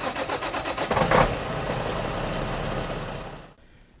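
A vehicle engine starting and revving: it comes in abruptly, peaks about a second in, holds a steady run, then fades out shortly before the end.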